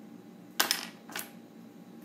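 Drawing instruments handled on the desk: a sharp click about half a second in with a brief ring after it, then a smaller click about half a second later.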